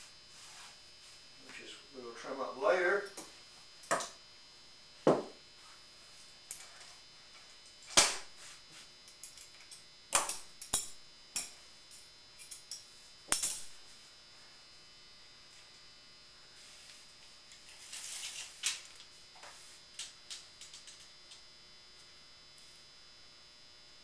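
Objects and tools being set down and handled on a cloth-covered table: a scattered series of sharp clicks and knocks, the loudest about a third of the way in, over a faint steady electrical hum.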